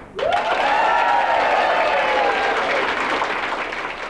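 Audience applauding as a line-dance routine ends, fading away toward the end. One long held tone rises over the clapping at the start and slowly sinks.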